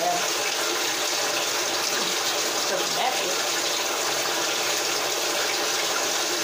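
Water running steadily, an even hiss that holds without change.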